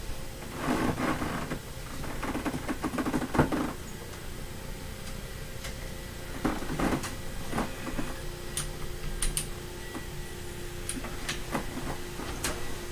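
Scattered rustling, soft knocks and clicks from someone moving about on a bed and handling things in a small room. A faint steady hum comes in about halfway through.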